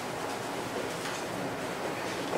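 Steady hiss of classroom room noise, with faint scratching of a marker writing on a whiteboard.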